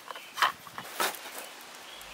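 Plastic clicks and knocks as the side cover is fitted onto a Bauer 20V cordless chainsaw, with two sharper knocks about half a second and a second in.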